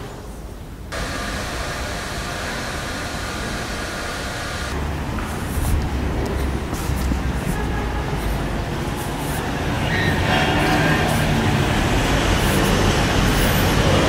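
Steady road-traffic noise, with a low rumble that grows a little louder in the second half.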